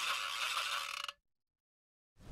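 A mechanical, clattering transition sound effect that cuts off suddenly a little over a second in.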